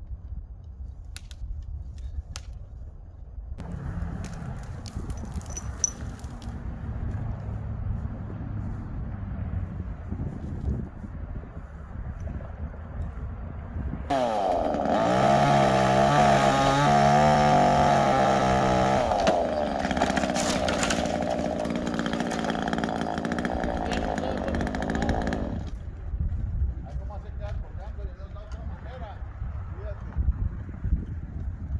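Chainsaw up in the tree running at low speed, then revving up about halfway through and cutting a branch for about ten seconds, its pitch wavering under load, before it stops suddenly.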